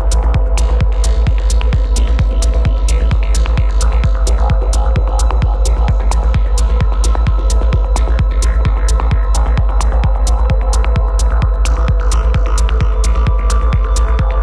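Hypnotic techno: a heavy, steady sub-bass with a sustained drone over it and quick, evenly spaced ticking percussion.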